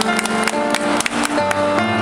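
Grand piano playing the slow opening bars of a pop ballad, a note or chord struck every half second or so and left ringing.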